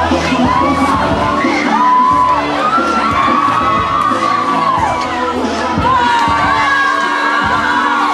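A crowd of students shouting and cheering, many overlapping yells and whoops, with music playing underneath.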